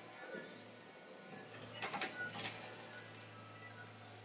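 Log loader's engine running steadily, heard from inside the cab as a low drone, with a quick run of sharp knocks about two seconds in as the grapple works the pine logs.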